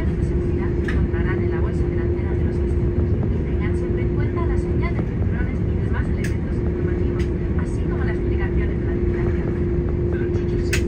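Cabin noise of an Airbus A330 taxiing: a steady low rumble with a constant hum, and people's voices talking in the background.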